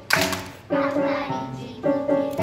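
Young children singing a song in chorus over a musical accompaniment, with a clap just after the start.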